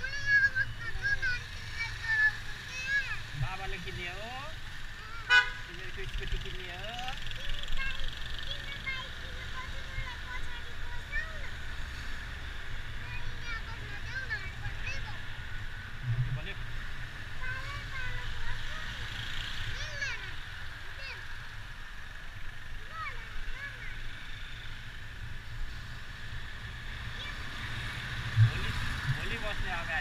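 Riding a motorbike through town: a low steady engine hum and wind noise, with a short vehicle horn toot about five seconds in.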